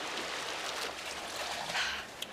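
A swimmer splashing in an indoor lap pool: a steady wash of water noise, with a louder splash near the end as she surfaces at the wall.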